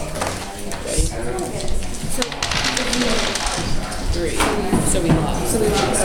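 Indistinct classroom chatter: several students talking at once, with a few short knocks.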